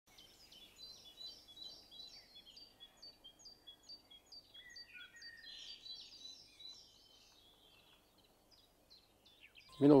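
Songbirds calling, one repeating a short high note about twice a second, with a few other calls mixed in; the calling fades out about seven seconds in, leaving quiet outdoor ambience.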